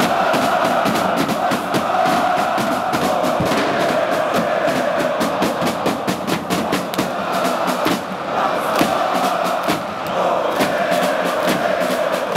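Large crowd of football supporters in the stands chanting in unison, a dense wall of voices over a steady beat.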